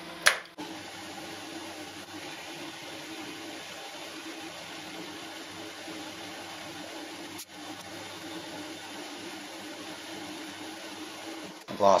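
Homemade metal lathe running steadily while it takes a light cut on an aluminium rod, the sound sped up along with a twelvefold time-lapse. A sharp click comes just after the start, and there is a brief break about seven and a half seconds in.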